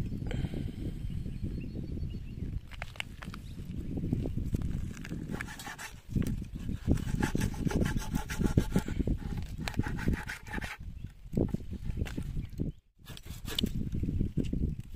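Knife blade cutting and scraping a raw chicken on a wooden plank: a rapid run of rough strokes and knocks on the wood. The sound drops out briefly near the end.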